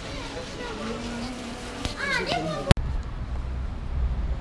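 Indistinct voices chattering, with a higher-pitched voice and a laugh. About two-thirds through, a sharp click cuts them off, and a low steady rumble takes over.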